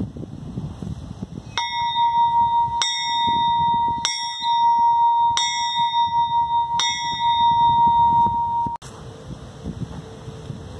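Old cast-iron bell rung five times, about one strike every second and a quarter, each strike ringing on into the next as one steady, bright tone with higher overtones. The ringing cuts off suddenly near the end.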